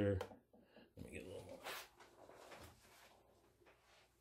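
Fingers pressing and spreading loose, earthy substrate in a plastic tub: faint rustling and scratching, with a few short scrapes in the first seconds that fade away.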